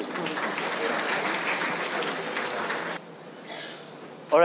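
Audience applauding; the clapping dies away about three seconds in.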